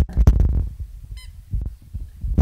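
A puppy mouthing a rubber squeaky toy: low thumps and rubbing noises, with one short high squeak of the toy about a second in.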